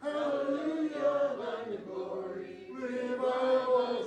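Congregation singing a hymn together, led by a man's voice at the microphone, in slow held notes.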